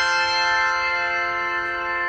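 Handbell choir's final chord ringing out, many bell tones sustaining together and slowly fading after the last strike.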